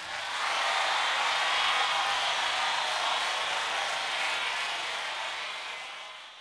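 A steady rushing noise with no tune or pitch. It swells in over the first second and then slowly fades toward the end.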